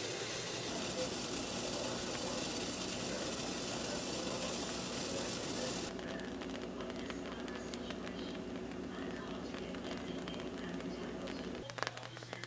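Maple syrup boiling steadily in a stainless steel stockpot, a low bubbling hiss with faint small pops in the second half. The syrup is being boiled down slowly toward the 235 °F candy stage.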